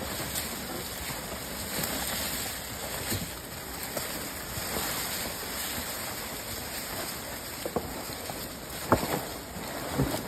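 Hard plastic deer sled loaded with a deer sliding and scraping over dry fallen leaves: a steady rustling rush, with footsteps in the leaves and a sharp crack near the end.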